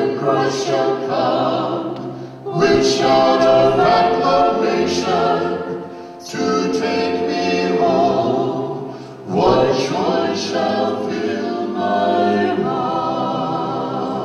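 A vocal group of men and women singing slow, sustained phrases in close harmony, with no steady beat, each phrase about three seconds long and set off by a brief pause.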